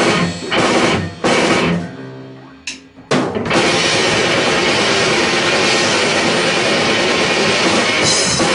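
Heavy metal band playing live: distorted electric guitars, bass and a drum kit. A few stop-start hits lead into a chord left ringing and fading for about a second. Two short hits follow, then the full band comes back in at full volume about three and a half seconds in and keeps going.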